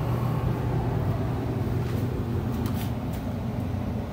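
Steady low hum of running forced-air furnace and air-handling equipment, with a few faint clicks about two to three seconds in.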